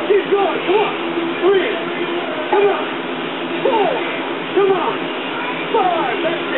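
A voice speaking indistinctly in short utterances about once a second, over a steady low hum.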